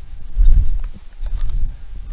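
Long-handled garden tool chopping and scraping into soil to clear surface weeds: dull thuds, the loudest about half a second in and another near the middle, with faint scratching of soil and roots.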